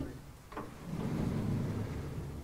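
Sliding lecture-hall blackboard panels being pushed along their vertical frame: a short knock about half a second in, then a low rolling rumble.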